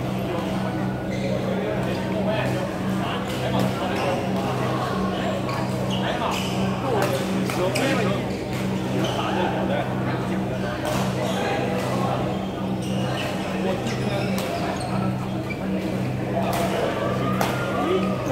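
Indoor badminton hall during doubles play: sharp racket strikes on the shuttlecock and other short clicks, over background chatter from around the hall and a steady low hum.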